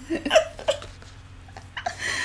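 Women laughing in a few short, breathy bursts, the loudest about a third of a second in.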